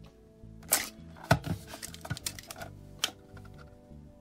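Several sharp clicks and taps of a tape measure being handled against a plastic mesh Wi-Fi unit, the loudest two within the first second and a half, over steady background music.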